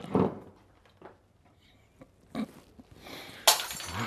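A Glencairn whisky glass knocked over onto a wooden bar top: a sharp glassy clunk at the start, then a few small knocks. About three and a half seconds in comes a second sudden sharp crash with a rushing tail.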